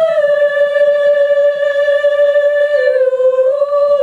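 A single high voice singing a slow melody without accompaniment, in long held notes that step down in pitch about three seconds in and rise again near the end.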